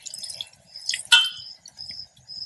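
A metal ladle stirring minced mutton frying in oil in an aluminium pressure cooker, with one sharp clink of the ladle against the pot about a second in, over a faint sizzle.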